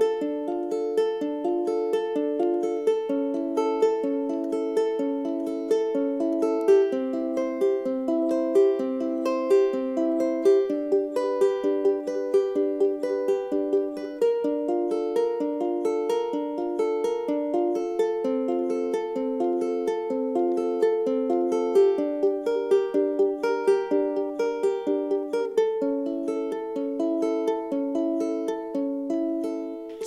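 Tenor ukulele in high-G standard tuning, fingerpicked in a steady repeating pattern of single notes (thumb on the fourth, third and second strings, index on the first), arpeggiating a chord progression in D minor.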